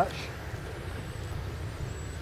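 Steady low outdoor background rumble, with no distinct events.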